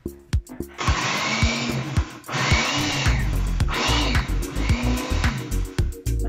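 Countertop blender running on chunks of banana and apple, in three bursts of one to two seconds each with short breaks between them. Background music with a steady beat plays throughout.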